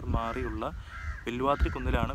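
A man speaking, with a bird calling in the background about a second in.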